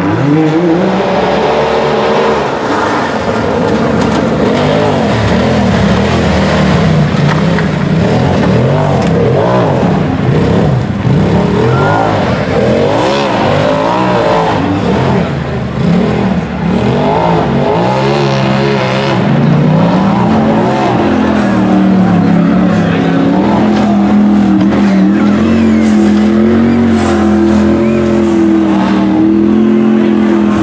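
UTV engine working hard on a steep hill climb, its revs rising and falling rapidly over and over as the throttle is worked and the tyres scrabble for grip. For the last third the engine is held at steady high revs with only a slight wobble.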